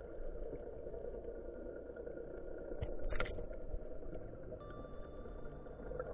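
Steady, muffled underwater rumble picked up by a camera underwater, with a brief burst of noise about three seconds in.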